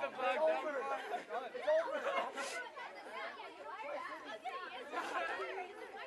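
A group of teenagers chattering, many voices overlapping at once so that no words come through clearly.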